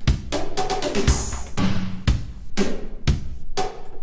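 Sampled drum beat from Groove Agent SE4, kick and snare with a run of sharp hits, bent up and down in pitch with the controller's pitch bend wheel. The bend moves the kick along with the snare, because the pitch bend is acting on the whole undissolved MIDI part, which makes it sound a little strange.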